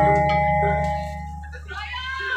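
Gamelan accompaniment breaking off, its metal tones ringing on and fading away. Voices start up near the end.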